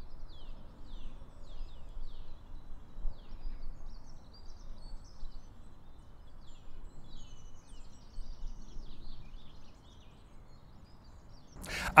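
Outdoor ambience heard through a cardioid electret lavalier held at arm's length: small birds chirping in many short, mostly falling notes over a faint low background rumble. The chirping thins out and the sound gets quieter near the end.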